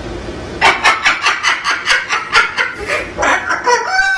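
White cockatoo calling in a rapid run of short clucking calls, about five a second, starting about half a second in.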